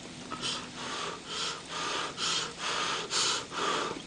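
A person breathing in quick, breathy huffs through the mouth while chewing a mouthful of dumpling, about two breaths a second.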